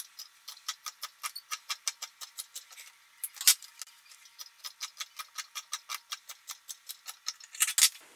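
Scissors snipping quickly through knit fabric along a side seam, about four or five crisp snips a second. There is a brief pause about halfway, then one louder click.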